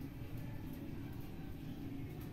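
Faint, steady low background hum with no distinct strokes or clicks.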